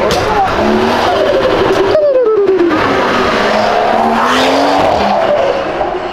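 A car accelerating hard away, its engine note climbing and dropping several times as the revs rise and fall through the gears.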